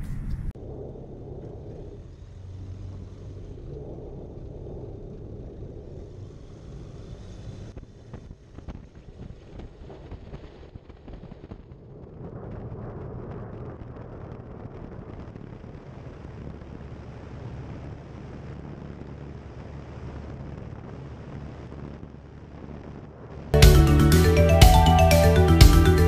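Roland Z602 ultralight's engine and propeller running steadily on the runway, with wind on the microphone. Music starts suddenly near the end.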